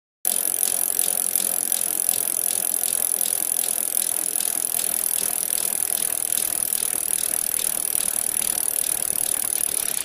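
A steady hiss that starts abruptly, with faint regular ticks several times a second.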